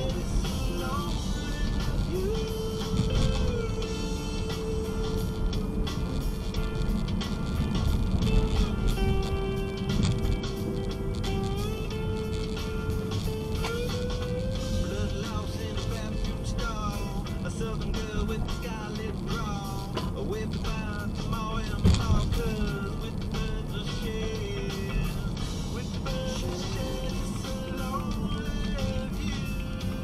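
Music from a 90s radio station playing inside a car's cabin, a held, sliding melody line on top, with steady road and engine noise underneath.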